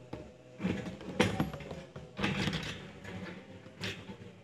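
Scattered knocks and scrapes of things being moved in a small room, over a faint murmur of voices.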